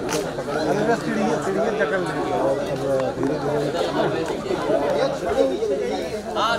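Several people talking over one another at once, a steady tangle of overlapping voices with no single speaker standing out.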